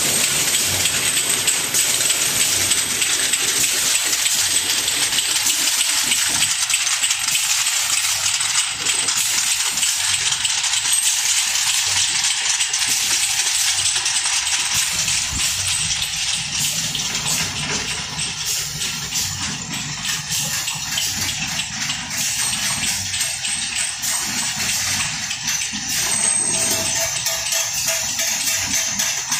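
Small amber glass vials clinking rapidly against each other and the machine's guides as they are fed through a bottle washing and filling line, over a steady hiss.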